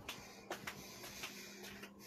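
Faint handling noise of a phone held in the hand: a handful of light taps and rubs over a steady low hum.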